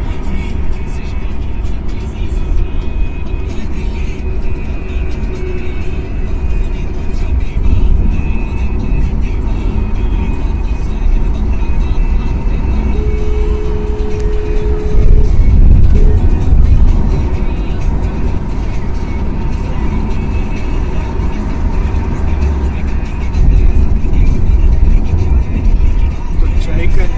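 Steady low rumble of road and engine noise from a moving vehicle, heard from inside it, with music playing along. A brief two-note steady tone sounds about halfway through.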